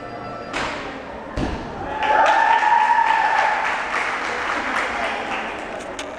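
A gymnast's feet knock sharply on the balance beam, then a heavier thud as she lands her dismount on the mat. Spectators then applaud and cheer, with one long drawn-out shout, the noise slowly dying down.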